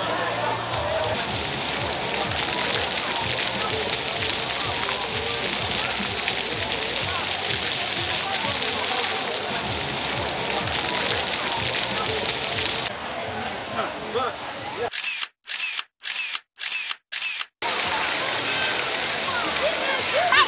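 Water pouring down a tiered fountain into its basin, a steady splashing rush, with crowd chatter around it. About fifteen seconds in the sound drops out completely five times in quick succession.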